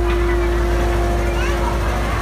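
A dhumal band's amplified instruments holding one steady note over a deep, continuous bass hum, with crowd voices in the background and no drumming.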